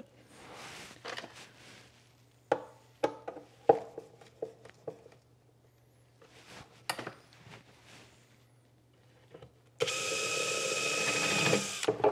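Several sharp clicks and knocks of wood and metal as a hand saw is handled and secured in a wooden wall-mounted saw holder. Near the end a power drill runs steadily at one speed for about two seconds and then stops abruptly.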